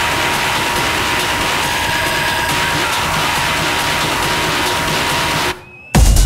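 Beatless noisy breakdown of a techno track on a club sound system: a steady wash of noise with a faint held tone. It cuts off suddenly about half a second before the end, leaving a brief quiet gap before the kick-drum beat drops back in.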